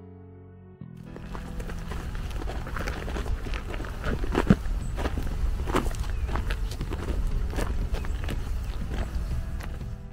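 Footsteps on a dirt track, irregular steps about one a second, over background music, with a steady low rumble starting about a second in.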